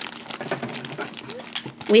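Black foil blind bag crinkling as it is handled before being cut open.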